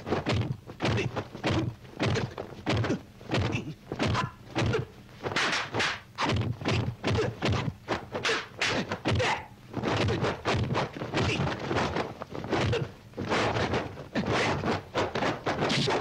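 Film fight sound effects: a rapid run of punch and kick impacts, several sharp thwacks a second with only brief gaps between flurries.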